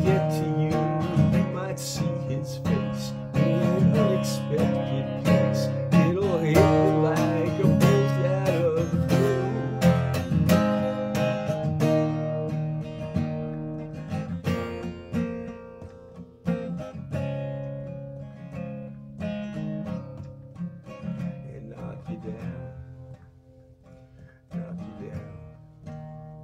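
Acoustic guitar strummed in chords, with a man's voice singing over it for the first several seconds. The guitar then plays on alone, getting gradually softer toward the end.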